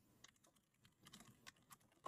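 Faint computer keyboard typing: a few soft, scattered keystrokes, most of them in the second half.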